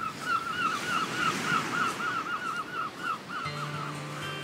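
A gull calling in a rapid series of about four arched notes a second, over the hiss of surf and wind. The calls stop near the end as guitar music comes in.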